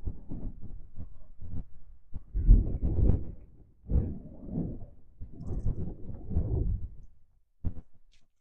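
Wind buffeting the microphone in irregular low gusts, loudest about two and a half to three seconds in and dying away near the end.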